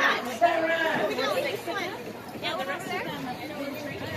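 People talking close by, several voices overlapping in chatter, loudest in the first couple of seconds.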